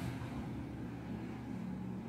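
Steady low background hum with faint noise and no distinct events.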